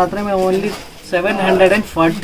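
A person's voice talking in two drawn-out, level-pitched stretches with a short pause between them.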